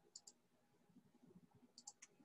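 Near silence: faint room tone with two pairs of light, high clicks, one pair just after the start and one shortly before the end.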